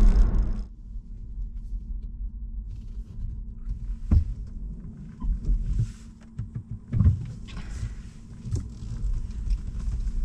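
Inside an electric car's cabin: motorway road and tyre noise cuts off suddenly just after the start, giving way to a quieter low rumble of the car rolling slowly, with a couple of knocks about four and seven seconds in.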